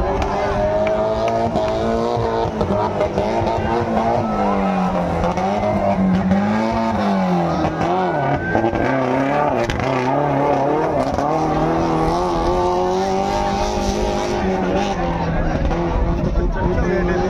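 An off-road 4x4's engine revving hard under load while it drives through mud. Its pitch keeps rising and falling and sags lowest around the middle.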